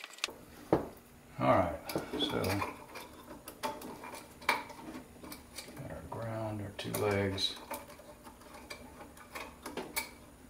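Scattered small metal clicks and clinks as wires with crimped ring terminals are handled and fitted into a steel electrical box. A man's low voice mumbles twice without clear words.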